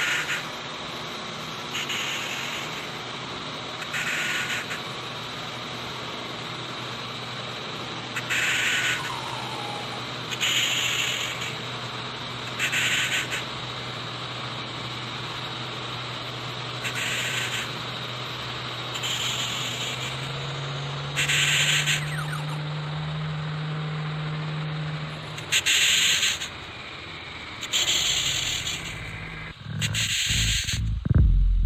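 Electronic music from a hardware synthesizer: a low steady drone under a constant hiss, with short bursts of hissing high noise about every two seconds. About two-thirds of the way through, the drone steps up in pitch, then stops a few seconds later.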